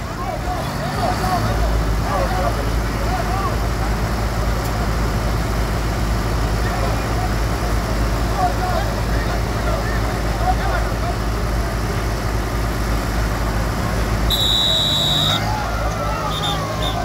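Tractor diesel engines of an IMT 542 and a Torpedo Rijeka 45 running steadily at low revs, a constant low rumble. Near the end a single high whistle-like tone sounds for about a second.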